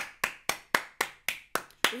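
One person clapping hands, about eight sharp claps at a steady four a second.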